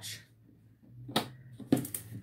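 Small metal latch on a cardboard box being unfastened and the lid opened: two sharp clicks about half a second apart, the first just past the middle, over light handling rustle.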